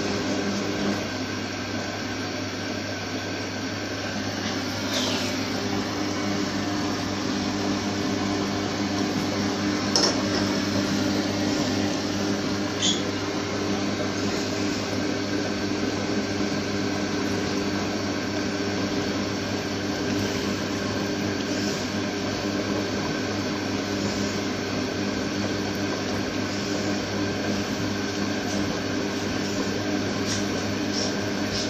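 Front-loading washing machine in its wash phase: the motor hums steadily as the drum turns and tumbles soapy laundry through the water, with a few brief clicks along the way.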